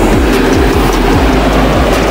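Loud steady rushing of the air dancers' and inflatables' blower fans running, with background music's regular beat over it.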